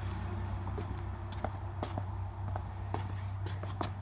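Scattered light clicks and taps, like footsteps and small handling noises, irregularly spaced over a steady low hum.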